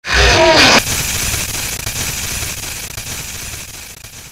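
A loud, sudden burst with a wavering pitch, under a second long, gives way to the hiss of TV static, which slowly fades.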